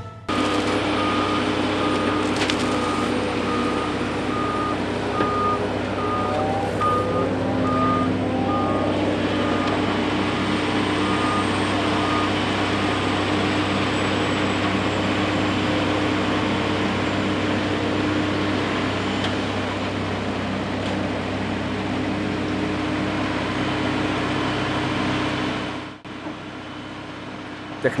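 Liebherr wheel loader's diesel engine running steadily, with its reversing alarm beeping evenly for roughly the first twelve seconds. The engine revs up briefly partway through, and the machine noise drops away about two seconds before the end.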